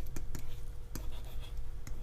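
A pen writing, with several short light taps across the two seconds, over a faint steady hum.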